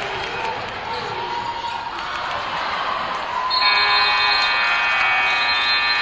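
Gym crowd noise with a basketball being dribbled. About three and a half seconds in, a scoreboard horn sounds loud and steady for about two and a half seconds, stopping play.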